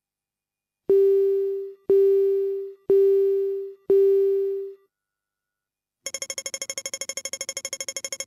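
Recorded acoustic pedestrian traffic-light signals: first four beeping tones, one a second, each fading away, then from about six seconds a different signal, a rapid high-pitched pulsing at roughly fifteen pulses a second.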